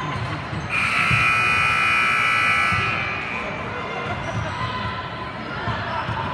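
Basketball gym buzzer sounding once as a steady electronic tone for about two seconds, starting just under a second in.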